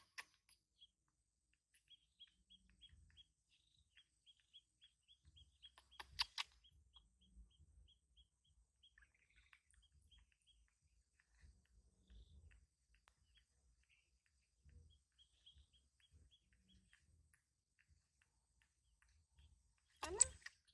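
Faint, quick runs of high bird chirps, about three a second, in two spells. A brief sharp crackle comes about six seconds in.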